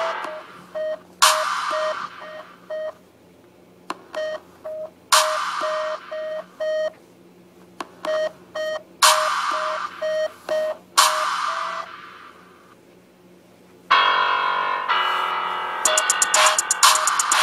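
Electronic background music: a short beeping note repeats two or three times a second, and loud hits that fade away land every few seconds.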